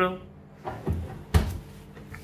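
Hinged glass door of a countertop mini oven being swung up and shut by hand. A couple of soft knocks come first, then a sharp clack as it closes, a little over a second in.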